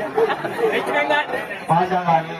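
Overlapping speech: several people talking at once.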